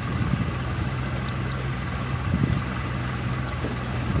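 Boat motor running steadily at low speed, a constant low hum.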